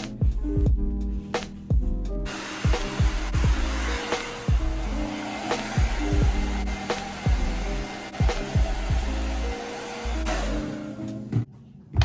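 Background music with a beat, and underneath it a handheld hair dryer blowing, starting about two seconds in and stopping shortly before the end.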